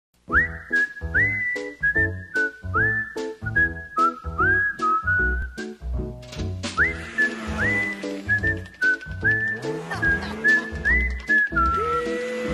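A whistled melody over a steady drum beat and bass line. Each phrase slides up into a held high note and then steps down.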